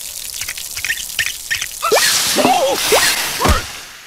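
Cartoon sound effects of water spurting and dripping from leaks in an animated insect's body, with a bright hiss of spray midway. Short squeaky cartoon vocal sounds glide up and down over it, the last one falling steeply in pitch near the end.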